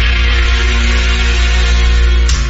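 Instrumental passage of a romantic pop ballad, with sustained chords held over a steady bass and no singing.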